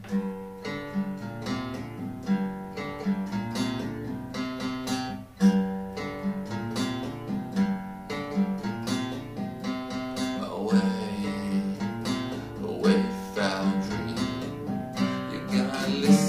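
Steel-string acoustic guitar with a capo, playing a song intro of picked and strummed chords in a steady rhythm.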